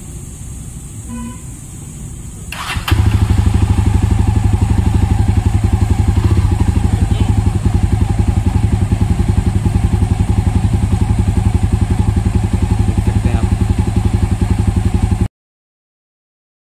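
Jawa 42 Bobber's single-cylinder engine is started on the starter about two and a half seconds in. It then idles steadily with an even, pulsing exhaust beat, heard close to the exhaust outlet, and the sound cuts off suddenly near the end.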